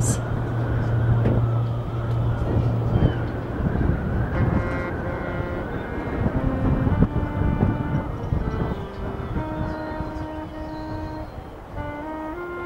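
Marching band music: a low held drone for the first few seconds, then a slow melody of sustained notes that step from pitch to pitch over soft held chords.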